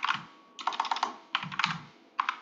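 Typing on a computer keyboard: two quick runs of keystrokes, the first starting about half a second in and the second near the end.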